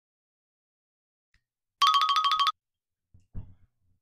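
A short electronic phone-ring trill about two seconds in: two close tones alternate rapidly, about sixteen pulses a second, for under a second. A faint low knock follows near the end.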